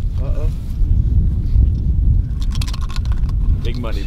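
Wind buffeting the microphone with a steady low rumble, and a short burst of rattling and clicking about two and a half seconds in as a hand rummages in a cloth bag to draw from it.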